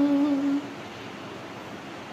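A woman humming the held last note of a sung line, unaccompanied and steady in pitch. It stops about half a second in, leaving faint room hiss.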